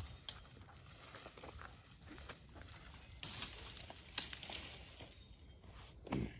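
Faint footsteps and scattered snaps and rustles of sticks and leaf litter on a forest floor as a fallen branch is cleared off the trail.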